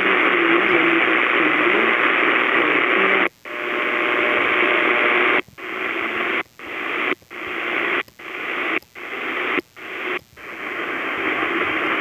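Hiss and static from a CS-106 portable AM receiver tuned between stations. It cuts out suddenly eight times, about three seconds in and then roughly every 0.8 s, swelling back after each cut as the receiver is stepped along the dial.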